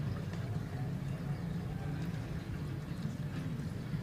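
Marinated chicken pieces being pushed onto a thin metal skewer by hand, with a few faint soft clicks of the skewer against the meat and the steel bowl, over a steady low background hum.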